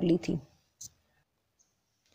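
A single short click a little under a second in, right after a woman's voice trails off, then near silence.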